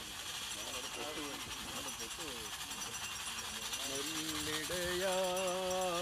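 Small bells jingle steadily and rhythmically over voices talking. About four seconds in, a slow chant begins, with long held notes.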